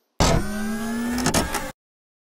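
A short burst of engine-like revving with a steady low note and a faint rising whine. It starts abruptly and cuts off after about a second and a half.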